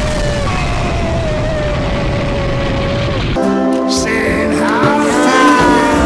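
Explosion sound effect: a long, steady rumbling boom that cuts off sharply about three seconds in. Orchestral film music follows it.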